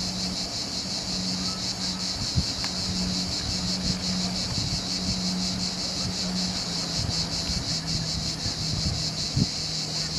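A steady, high-pitched chorus of cicadas singing in fine rapid pulses, over wind buffeting the microphone and a low hum that comes and goes.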